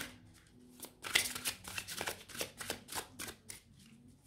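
A deck of oracle cards being shuffled by hand: a quick run of short card slaps and flicks that starts about a second in and stops just before the end.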